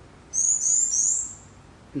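A small bird chirping: three quick, high-pitched chirps in a run of about a second.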